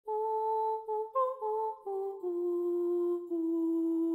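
A voice humming a short wordless tune: a few quick notes, one briefly higher, then stepping down to a long held low note that carries through the second half.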